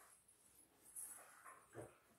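Near silence, with a few faint brief sounds about a second in and again near the end.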